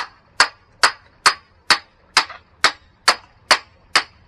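A hammer striking the back of a hatchet, metal on metal, in a steady rhythm of about two blows a second, each blow ringing briefly. The hatchet is being driven into the top of a log to split off thin slivers of kindling.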